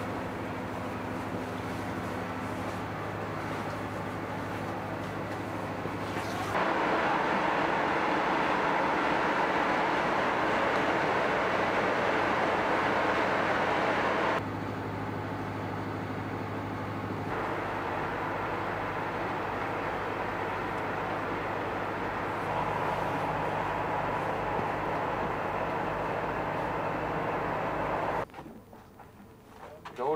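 Steady machinery running: a low hum under a continuous rush of noise. It steps abruptly louder about six seconds in, drops back about eight seconds later, and stops shortly before the end.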